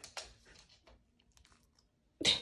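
Near silence: room tone with a few faint clicks near the start.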